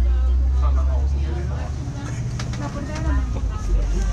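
Low rumble of a MAN ND 313 double-decker city bus on the move, heard from inside on the upper deck, heaviest in the first two seconds and easing a little after, with people talking over it.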